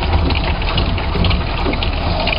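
Steady hiss and splash of water spraying into the pond, with a low rumble underneath.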